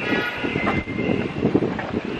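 City street traffic with a steady, high-pitched squeal over the general rumble.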